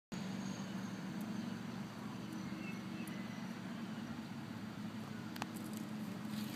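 Steady low mechanical hum with a faint background hiss, and a single faint click about five and a half seconds in.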